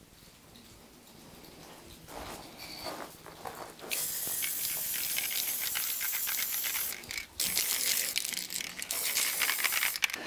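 Aerosol spray-paint can: the mixing ball rattles as the can is shaken, then the spray hisses in a steady burst from about four seconds in. The spray breaks off briefly near seven seconds and then resumes.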